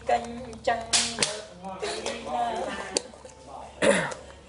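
A few sharp smacks, about three, the loudest near the end, with short stretches of a voice between them.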